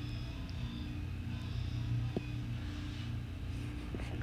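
Steady low background hum with a few faint steady tones above it, and one faint click about halfway through.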